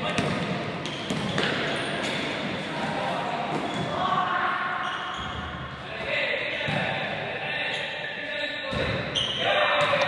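A ball bouncing repeatedly on a sports hall floor, with players' shouts and calls echoing around the large hall.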